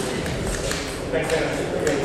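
A few sharp clicks of celluloid table tennis balls striking bats and tables, heard over voices.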